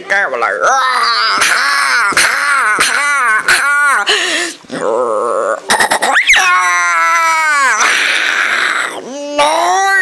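A high-pitched voice talking in Thai, then making drawn-out whining cries that rise and fall in pitch over the last few seconds.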